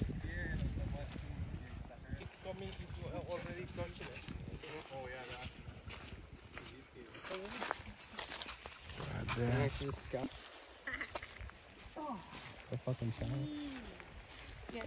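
Mostly speech: scattered voices of several people talking and exclaiming, some of them distant, with a short "oh" near the end.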